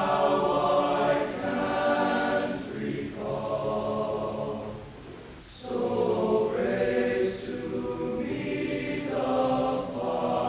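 Tenor-bass choir of male voices singing in harmony, in long held phrases. About five seconds in the sound falls away briefly between phrases, and the next phrase enters with sharp 's' consonants.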